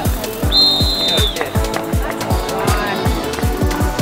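Referee's whistle giving the long final blast that ends the match, over electronic music with a fast, booming bass-drum beat.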